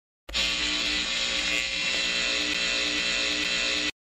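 A synthetic electric buzzing sound effect for a transformer fault: a steady, dense buzz with a hiss over it. It starts suddenly and cuts off abruptly after about three and a half seconds.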